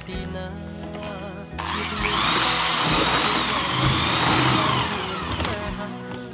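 Corded electric drill with a paddle mixer running in a bucket of cement mix, starting about a second and a half in and running for about four seconds, its motor whine rising and falling in pitch as the speed changes; background music plays throughout.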